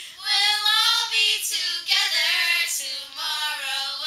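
Several young girls singing a camp song together, unaccompanied, in long held notes that step up and down in pitch.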